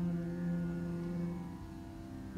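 Dhrupad singing: a male voice holds one long, low, steady note that eases off slightly near the end.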